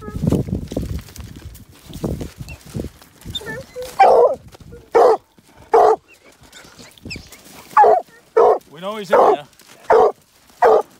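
Hunting hound barking at a hole in a rock pile where a bobcat has gone to ground, a sign that it has the cat located. After a few seconds of quieter scuffling, it gives about six short loud barks, and one near the end is drawn out into a brief bawl.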